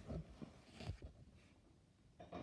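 Faint handling noise from a phone being turned around in the hand: a few soft knocks and rubs in the first second, then near quiet.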